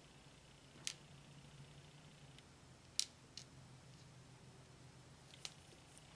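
Near silence broken by four small, sharp clicks of miniature toys being picked up and handled, the loudest about three seconds in, over a faint steady hum.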